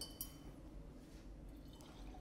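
A glass laboratory beaker handled on the bench: one faint clink just after the start, with a short ringing tail.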